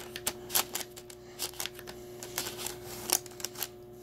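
Heated rosin press mid-squeeze, giving scattered light clicks and crackles over a faint steady hum.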